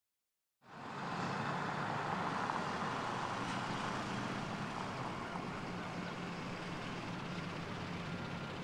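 Steady engine and traffic-type noise with a low hum, starting about half a second in after silence and holding an even level.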